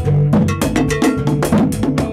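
Live band playing a Haitian kompa groove: drum kit struck in a fast, even run of about seven strokes a second over bass guitar notes.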